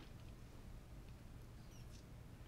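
Near silence: room tone, with a faint brief high squeak or two near the end.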